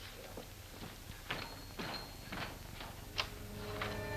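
Irregular knocks of boot footsteps on a wooden floor as a man walks off, a couple of them with a short high ring. Low background music comes in near the end.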